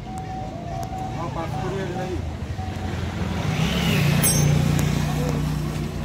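Voices in the background over a motor vehicle engine running, its steady low hum growing louder about halfway through.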